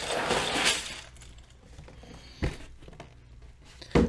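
Loose Lego pieces rattling and clinking inside a plastic bag as it is handled, with the bag crinkling, for about the first second. Then it goes quiet, with a single thump about two and a half seconds in.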